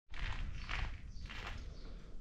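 Footsteps walking at an easy pace, about two steps a second, over a steady low background hiss.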